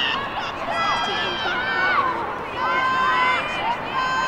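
Women's voices shouting across an outdoor lacrosse field during play: several high, drawn-out calls overlap, the longest held for most of a second near the start and again near the end.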